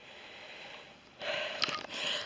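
A faint hiss, then a breathy rush of air starting about a second in, like a person breathing in.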